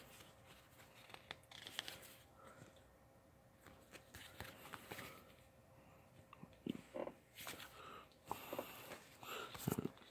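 Faint, scattered rustling and small clicks of sticker-sheet packs being handled and turned over in the hands.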